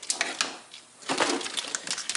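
Crackling rustle and small clicks of wires and plastic cable loom being handled, with a couple of sharper clicks at the start and a denser run of crackle from about a second in.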